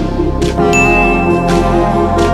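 A notification-bell ding sound effect: one high, bell-like tone held for just under a second, starting about two-thirds of a second in, over background music.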